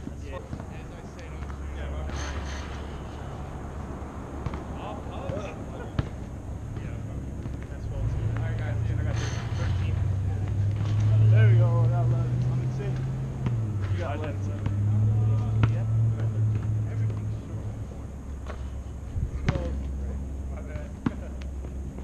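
A few sharp thuds of a basketball on an outdoor asphalt court, with the players' voices, over a low steady hum that steps up and down in pitch and is loudest a little past halfway.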